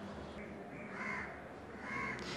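Faint harsh bird calls over a low steady room hum: one about a second in and another near the end.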